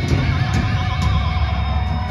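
A thrash metal band playing live through the PA: heavy distorted guitars and bass fill the low end, and a high sustained note wavers up and down in pitch.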